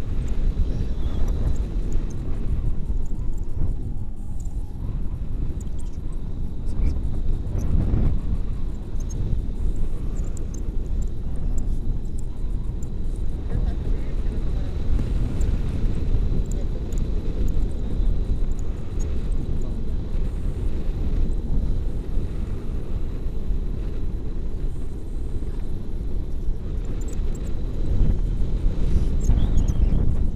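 Wind buffeting the microphone of a camera on a tandem paraglider in flight: a steady low rumble of rushing air.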